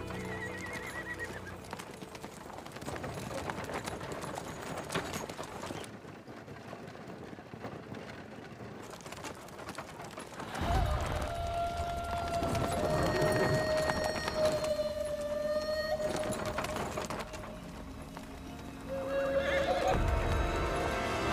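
Hooves of several horses clip-clopping on a dirt track, with background music that grows louder about halfway through into a long held note.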